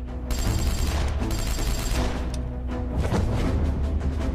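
Dramatic soundtrack music with rapid gunfire from automatic rifles, the shooting starting about a third of a second in.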